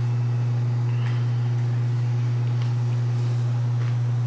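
A steady low electrical-sounding hum that stays at one pitch and one level throughout, with a couple of faint clicks.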